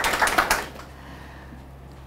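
Audience clapping, a dense patter of many hands that dies away about half a second in, leaving only a low room hum.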